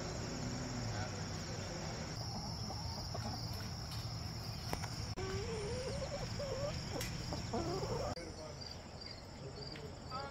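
Insects trilling steadily in a high, continuous drone. About five seconds in, brown hens give a few seconds of drawn-out, wavering calls.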